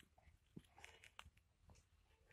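Near silence with a few faint, short clicks: a hamster nibbling at the shell of a peanut.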